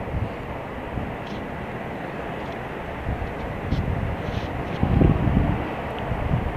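Plastic basket wire handled and pulled while being knotted, with faint clicks and a louder rustle about five seconds in, over a steady background rumble.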